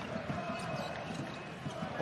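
Arena crowd noise during live basketball play, with a few thuds of a basketball being dribbled on the hardwood court.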